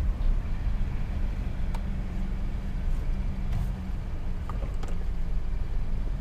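Car engine and road noise heard inside the cabin, a steady low hum as the car rolls slowly forward, with a few faint clicks.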